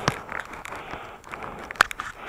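Powder skis sliding over snow: a steady hiss broken by irregular crunches and clicks, the sharpest about a second and three-quarters in.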